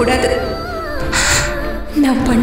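Melodramatic background score with held, wavering notes. A short hissy, breathy sound comes about a second in.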